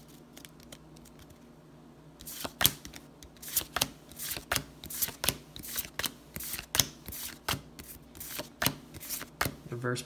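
Pokémon trading cards being flicked through by hand, one card slid off the stack at a time: a run of short, crisp card snaps about two a second, starting about two seconds in.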